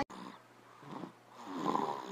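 A woman's soft, breathy voice in two short stretches, about a second in and again near the end.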